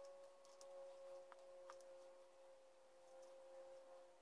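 Near silence: a few faint steady held tones, with a handful of faint light clicks.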